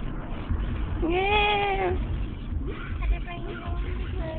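A cat gives one drawn-out meow of about a second, rising and then falling in pitch, over the steady low rumble of a car's cabin on the road.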